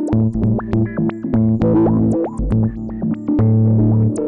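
Electric guitar played through Guitar Rig 5's 'Filter Cheese' preset, which gives it a synth-like sound. A rhythmic run of short notes, several with upward swoops in pitch, plays over low sustained tones.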